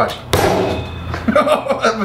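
A heavy metal mixing bowl holding close to 30 pounds of raw ground meat is dropped onto a wooden butcher-block table: one sudden thud with a brief metallic ring, followed by a chuckle.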